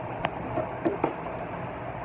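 Steady room hiss with a few faint clicks as hands handle toy rubber-tyred wheels and thread.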